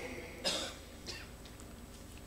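A short cough about half a second in, followed by a fainter, smaller sound just after a second.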